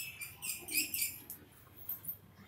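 Chalk writing on a blackboard: a quick run of short, high scratching strokes through the first second or so, then it stops.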